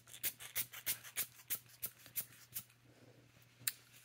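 A quick run of light clicks and taps, about four or five a second, from a plastic syringe working against a paper swatch card as ink is dropped onto it. One more tap comes near the end.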